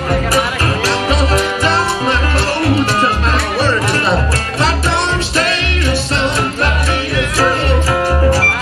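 A live blues band playing an instrumental passage: double bass plucking steady low notes, electric guitar, a washboard scraped and tapped in quick clicks, and an amplified harmonica played through a cupped microphone.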